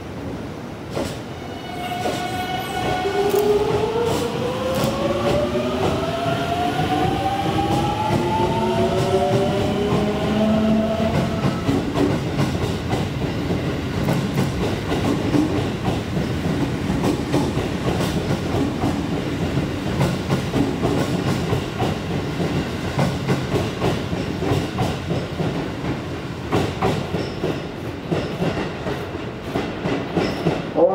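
JR Central 373 series electric train's inverter-driven traction motors whining, the whine climbing in pitch over the first ten seconds or so as the train gathers speed. Its wheels then roll and clack over the rail joints as the nine cars pass by.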